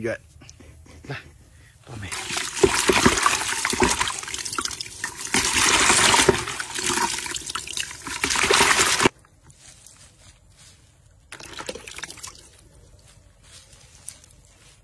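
Water running or pouring with a splashing hiss, starting about two seconds in, lasting about seven seconds and cutting off suddenly.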